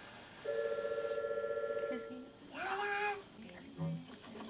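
A children's television programme playing from a television set: a steady, pulsing electronic tone for about a second and a half, then a short high-pitched voice-like call.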